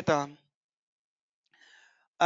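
A voice finishing a spoken word, then silence, then a short faint breath drawn in near the end.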